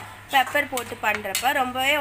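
A metal spatula clinking and scraping against a kadai as chicken in thick gravy is stirred, a few sharp clinks among it, with a woman's voice speaking over it.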